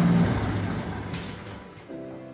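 Small gasoline engine on a trommel running steadily, then shut off a quarter second in and winding down to a stop.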